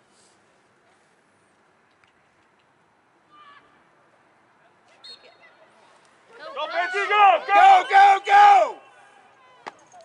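A spectator's high-pitched voice close to the microphone, a quick run of rising-and-falling syllables lasting about two seconds near the end, over faint background crowd noise.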